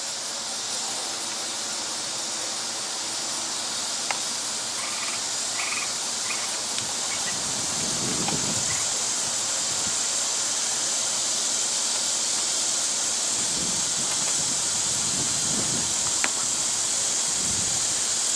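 Steady, high-pitched drone of insects, slowly growing a little louder, with a faint low rumble swelling briefly about halfway through and again later.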